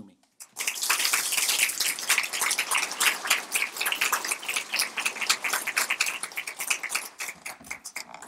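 An audience applauding. The clapping starts about half a second in and tapers off near the end.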